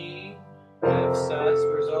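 Piano sound from a Roland Fantom X keyboard: a held chord fading out, then a new chord struck in both hands less than a second in and held, with notes moving above it.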